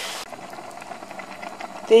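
Sliced mushrooms and onion frying in butter in a frying pan: a quiet, steady sizzle with faint crackles.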